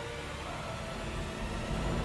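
A television graphics transition effect: a steady rushing noise with a low rumble under it and a few faint held tones.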